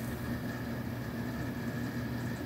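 A steady low hum over a faint hiss, unchanging throughout: background noise of the recording room.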